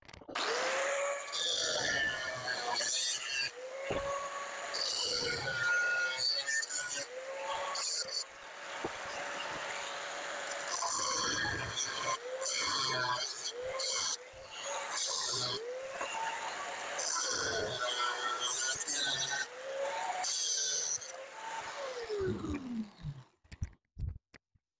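Angle grinder cutting steel square tubing with a cutting disc: the disc shrieks through the metal in repeated passes over a steady motor whine that dips and recovers with each pass. Near the end the motor winds down with a falling pitch.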